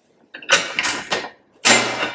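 Stainless-steel pressure cooker lid being twisted by its handles against the pot rim: metal scraping and clanking in two bursts as the lid is tried. The lid is held shut by the pressure-indicator valve, which doubles as a lid lock when there is pressure inside.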